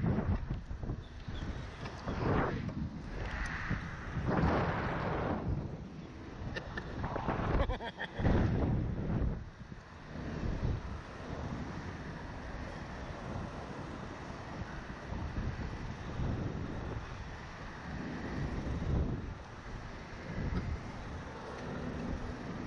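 Wind rushing over the microphone of a camera mounted on a swinging, bouncing Slingshot reverse-bungee ride capsule. It comes in strong surges through the first ten seconds or so, then settles to a steadier rush as the swinging dies down.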